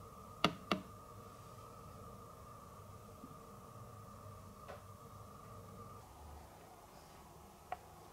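Quiet room tone with a faint steady high hum that stops about six seconds in, broken by a few sharp clicks: two close together near the start, one in the middle and one near the end.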